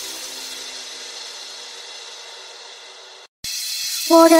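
A gap between tracks in an electronic dance remix: the previous track's hissy reverb-and-noise tail with faint held tones, fading slowly. It cuts to a brief silence about three and a quarter seconds in, then the next track fades in just before the end.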